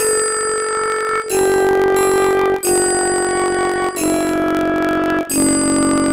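Synthesized instrument playback from a music-notation app, playing the raga Yaman melody as five sustained notes of about 1.3 s each, stepping down: dha, pa, tivra ma, ga, re (A, G, F sharp, E, D).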